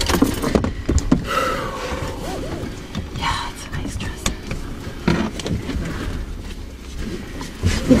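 Low, steady rumble inside a pickup truck's cab, with a few brief indistinct bits of talk and several light knocks.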